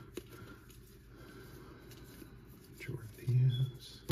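Faint soft ticks and slides of baseball cards being thumbed through a hand-held stack, then a short hummed 'hmm' from a man's voice about three seconds in, the loudest sound here.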